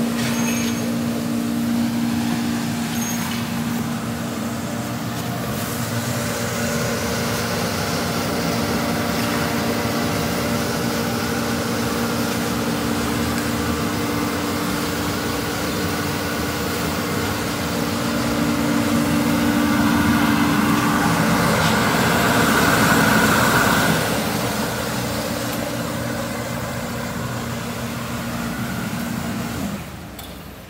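Kärcher Cuda parts washer running: a steady machine hum with a hiss over it, louder for a few seconds past the middle. It cuts off suddenly at the end as the machine is switched off.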